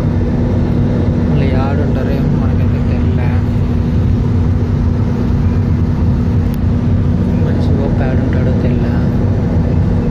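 Steady drone of engines and rushing air inside a jet airliner's cabin in flight, with a constant low hum running through it.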